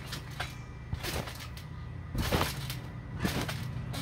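A child bouncing on a trampoline: a few thumps of feet and knees on the mat, the loudest about two seconds in and another about a second later.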